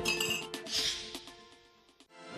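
The last notes of a short TV intro jingle ringing out and fading away almost to silence, with a light glassy clink near the start.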